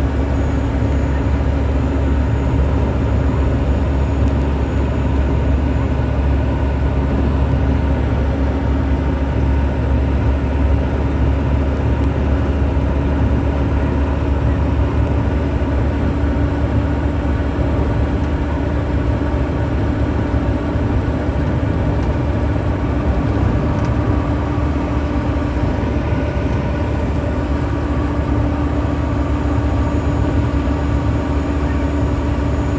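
Steady engine and road noise inside a moving vehicle's cabin: a constant low rumble with a steady hum, unchanging throughout.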